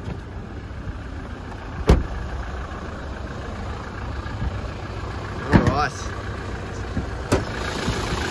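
Toyota Hilux engine idling steadily, with a few sharp clicks and knocks from the truck's body as the bonnet is released and raised. The loudest click comes about two seconds in and another comes near the end.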